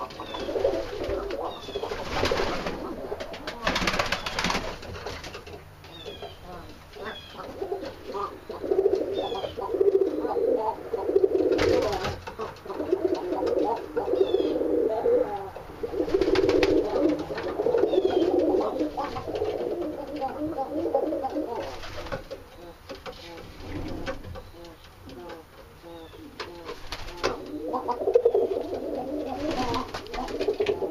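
Several pigeons and doves cooing almost without a break, with a few short clatters of wing flaps.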